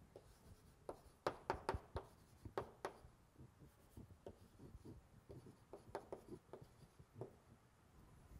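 Chalk writing on a blackboard: faint, irregular taps and short scratches as the strokes of an equation go down, in two clusters.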